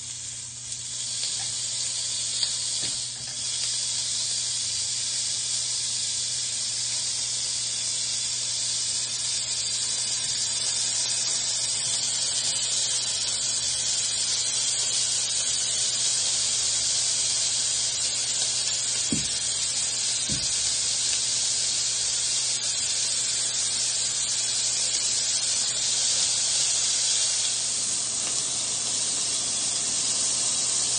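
Marinated Korean beef short ribs sizzling on a hot electric grill plate. The sizzle swells over the first couple of seconds as the meat goes down, then holds as a steady hiss.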